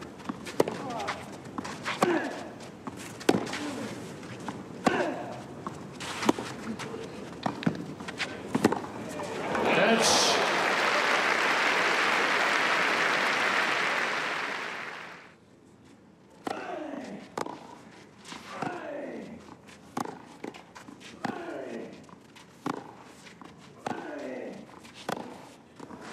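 Tennis rallies on clay: sharp racquet strikes on the ball every second or two, with the players' grunts on their shots. About ten seconds in, crowd applause rises and holds for some five seconds, then cuts off suddenly. Another rally of ball strikes and grunts follows.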